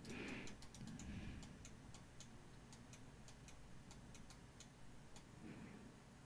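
Near silence with faint, light ticks recurring a few times a second.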